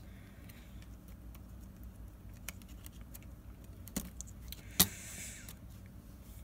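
A few light clicks and taps of small metal phone parts being handled: the iPhone 5s display's metal back shield plate being fitted onto the new screen. The sharpest click comes near the end, over a faint steady hum.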